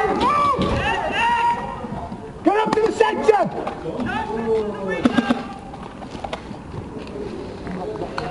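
Shouted voices, too far off or too overlapped to make out words, coming in bursts near the start, about a third of the way in and around the middle, with a few sharp clicks between them.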